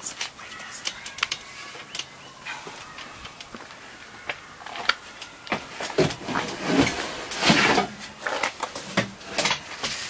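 A rotocast plastic folding table knocking and scraping against a storage compartment as it is worked into place: scattered knocks and clicks that come thicker in the second half, with a longer scrape about seven and a half seconds in.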